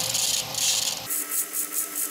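Belt grinder's abrasive belt grinding the steel bolster of a chef's knife, taking down its thickness to round it off. The grinding changes abruptly about a second in, then goes on as a bright hiss that pulses about six times a second.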